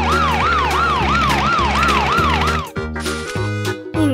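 Cartoon police-siren sound effect, a fast wail rising and falling about three times a second over children's background music; the siren stops about two-thirds of the way through.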